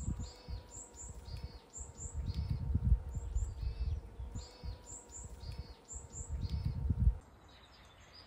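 A small songbird sings the same short, high chirping phrase over and over, about once a second, over low, gusty rumbling from wind on the microphone and a faint steady hum. It all cuts off suddenly about seven seconds in.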